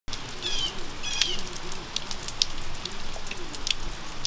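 Steady rain falling, with scattered drips. Birds call through it: two short high chirps in the first second or so, and a few low, wavering calls.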